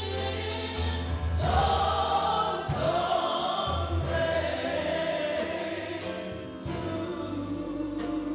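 Gospel choir singing over a steady beat.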